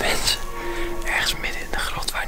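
A man whispering, with background music under it.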